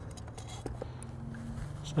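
Quiet room tone: a steady low hum with a few faint clicks and a brief faint tone about a second in.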